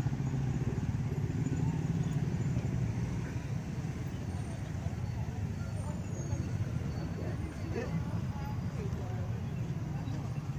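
Street crowd noise: motorbike and scooter engines running in slow, dense traffic, a steady low hum, mixed with the chatter of many people.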